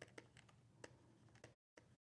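Near silence broken by irregular light clicks, about half a dozen in two seconds: a stylus tapping on a tablet screen while handwriting.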